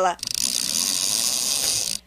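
Laser dinghy's sheet line being pulled through a ratcheting fitting: a dense, fast clicking that sets in a moment after the start, runs steadily, then cuts off suddenly.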